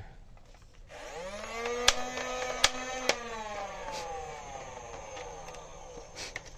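Electric motor of a motorized foam-dart toy blaster spinning up with a quick rising whine, then slowly winding down with a falling pitch. Three sharp clicks come between about 2 and 3 seconds in.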